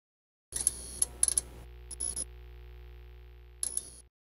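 Synthesized intro sound effect: a steady low drone with held tones, broken by short clusters of sharp, high glitchy clicks, starting about half a second in and again around two seconds and near the end.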